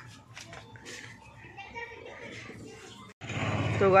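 Faint, indistinct voices with a few light ticks in the background. Just after three seconds the sound cuts out abruptly, then a man starts talking loudly close to the microphone.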